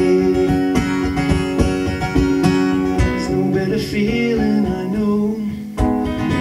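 Acoustic guitar strummed in a steady rhythm through an instrumental break between sung lines, with a short drop in level near the end before the strumming picks up again.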